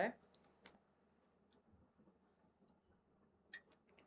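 Near silence: room tone with a few faint, irregular small clicks, a slightly louder one about three and a half seconds in.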